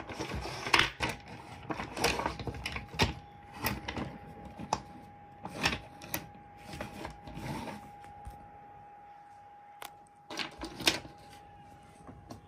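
Toy subway cars being handled, knocked together and set down on a desk: a string of irregular clicks and clatters, busiest in the first half, a lull, then a short cluster near the end.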